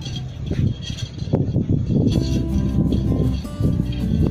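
Background music with held notes, clearest from about halfway in, with a few light handling ticks in the first half.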